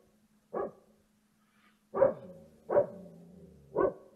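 A dog barking four times, short single barks spaced about a second apart, with a faint low hum underneath.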